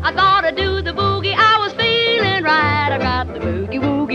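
Late-1940s country boogie record: a lead melody with wide vibrato over a pulsing bass line.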